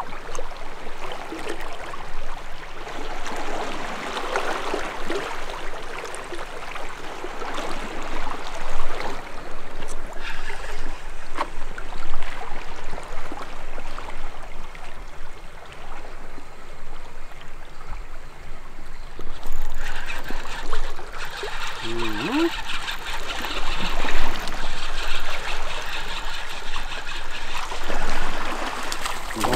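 Small waves lapping and trickling against a rocky sea shore, an uneven, splashy water noise that rises and falls.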